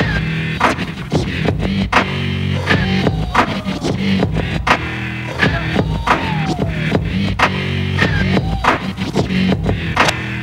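Turntablist routine on two vinyl turntables and a mixer: a drum beat cut up by hand, with sharp chopped hits and scratched sounds sliding up and down in pitch over stepping bass notes.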